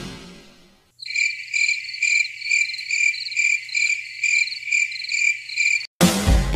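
A short musical sting dies away in the first second. Then crickets chirp in an even run of about two chirps a second, about eleven in all, and cut off suddenly just before the end.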